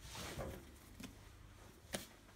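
Faint rustle of hands handling shaped bread dough on a floured wooden table, with a few light taps and a short knock near the end.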